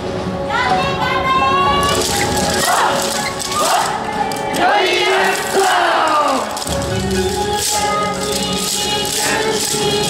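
Yosakoi dance music played loud, with dancers' shouted calls rising and falling over it and the clacking of naruko wooden hand clappers.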